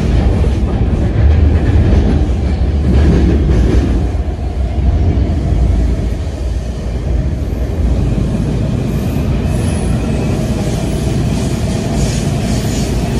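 Inside a WMATA Breda 2000 Series Metrorail car running through a tunnel: a loud, steady low rumble of the car and its wheels on the rails.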